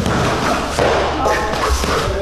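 Gloved punches landing during sparring: a run of dull thuds, with a voice over them.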